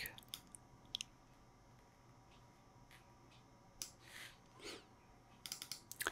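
Near silence broken by a few faint, sharp computer mouse clicks, with a quick run of them near the end.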